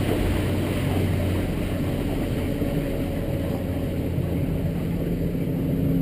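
Suzuki DF300 V6 outboard running with the boat under way, its steady drone mixed with water rushing along the hull, heard from inside the enclosed cabin.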